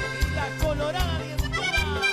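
Live cuarteto band music with a steady bass-and-percussion beat under a melody with gliding, sliding notes.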